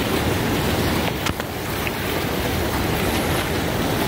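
Steady rushing of fast river rapids, an even wash of water noise with no break.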